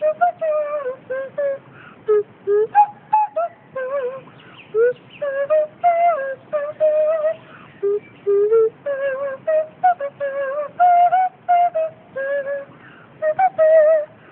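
Nose flute playing a swinging tune of short notes, many of them sliding up or down in pitch, with brief gaps between phrases.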